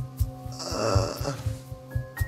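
A man's single drawn-out snoring groan with a wavering pitch, about half a second in. Background music with a steady low pulse runs under it.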